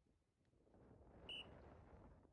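A single short, high electronic beep about a second in, marking the start of a Blazepod sprint timer as the pod is tapped, over a faint low background rustle.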